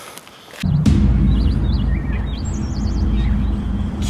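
Songbirds chirping and trilling over a loud, steady low drone that starts abruptly just under a second in.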